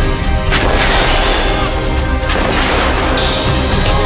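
A 105 mm towed howitzer firing: two loud shots, the first about half a second in and the second about two seconds later, each ringing on after the blast. Background music with sustained tones plays under them.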